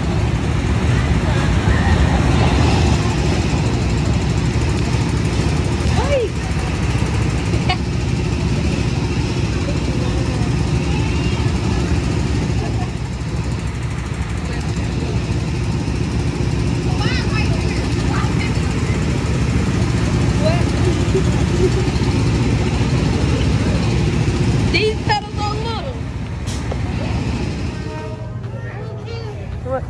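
Go-kart engine running with a steady low hum, the kart moving around a track.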